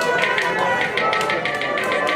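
Live instrumental accompaniment to a ragni: steady held tones with quick, even percussive taps, an instrumental interlude between sung lines.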